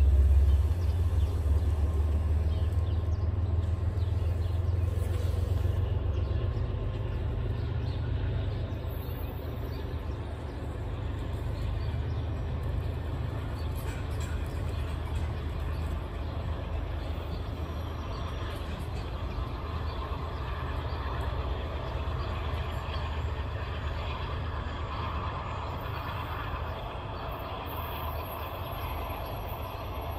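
MBTA commuter train departing, pushed by its HSP-46 diesel locomotive: a deep engine rumble, loudest in the first few seconds, fades steadily as the train pulls away.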